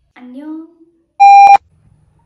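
A brief rising vocal sound from a woman, then about a second in a loud, steady electronic beep lasting about a third of a second that cuts off abruptly with a click, an edited-in beep sound effect.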